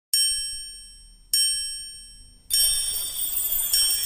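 Intro sound effect: two bright, ringing chime strikes about a second apart, each fading away, then a louder shimmering swell with a high sparkle from about halfway through.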